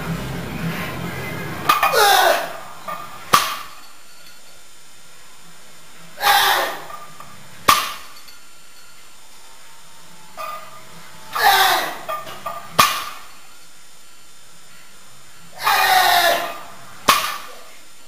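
Deadlift reps with an iron-plate-loaded barbell: four times, roughly every four and a half seconds, a loud strained vocal effort as the bar is pulled, followed about a second later by a sharp metallic clank as the plates are set down on the wooden platform.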